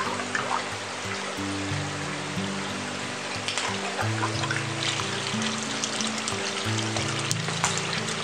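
Water trickling and pouring over lava rock as an aquaterrarium's pump flow is switched on, building into a small waterfall falling into the pool. Background music with a run of held notes plays over it.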